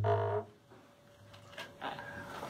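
A man's singing voice holding the last note of a round dance song, which stops about half a second in. Then near silence, with a couple of faint knocks near the end.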